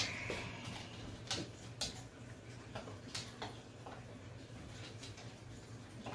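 Faint, scattered clicks and light taps, about a dozen, from hands and a silicone tube working inside a glass aquarium while sealing an acrylic overflow, over a low steady hum.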